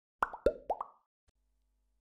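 A quick run of about five bubbly 'plop' sound effects, each a short upward glide in pitch, all within the first second of an intro title animation.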